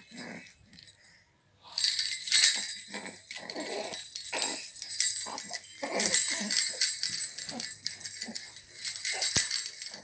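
A baby's jhunjhuna, a stick rattle ringed with small metal jingle bells, shaken over and over, jingling in quick irregular strokes that start about two seconds in.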